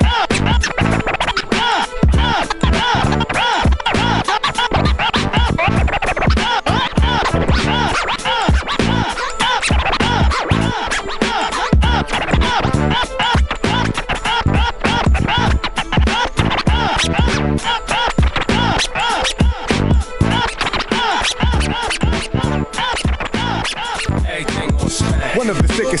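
DJ scratching vinyl on turntables over a hip hop beat: rapid back-and-forth scratches that swoop up and down in pitch, chopped into short cuts by the mixer's fader.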